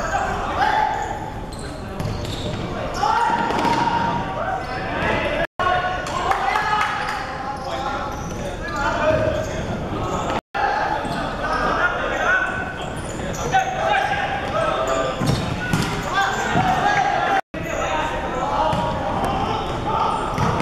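Players' shouts and calls echoing around an indoor sports hall during a futsal match, with the ball knocking off feet and the wooden court. The sound drops out briefly three times.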